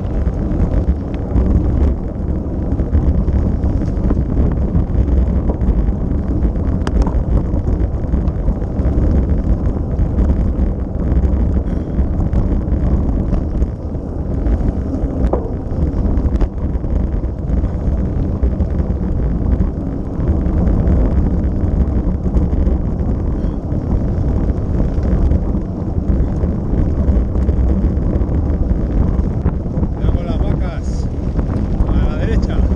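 Wind buffeting the microphone of a camera riding on a mountain bike, with the steady low rumble and rattle of knobby tyres rolling over a dirt and gravel track.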